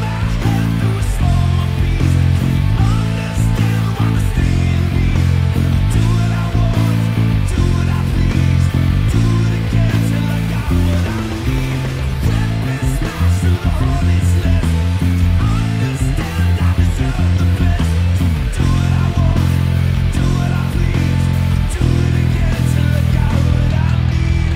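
Electric bass played along with a rock band's recording, the bass line's notes strong in the low end under the full mix of guitars and drums.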